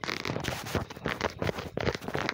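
Quick, irregular scratchy rubbing strokes, typical of a finger dragging back and forth across a phone's touchscreen close to the phone's microphone.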